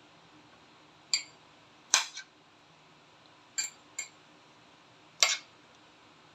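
Metal spoon stirring dog kibble and soaked beef in a ceramic bowl, knocking against the bowl in about six short, ringing clinks at uneven intervals.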